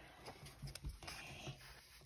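Faint rustling of a picture book's paper pages being flipped over, with a few soft taps.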